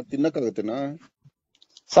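Speech: a man talking for about a second, then a silent gap, then a short spoken "Sir?" at the end.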